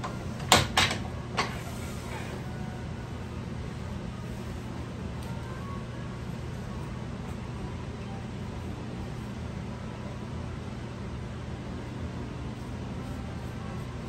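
Three sharp wooden knocks in quick succession near the start, then a steady low machine hum in a woodworking shop.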